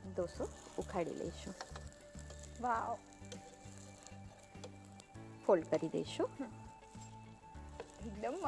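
A dosa sizzling in a hot nonstick pan as it finishes cooking, under background music with a steady bass pattern and a few short bursts of voice.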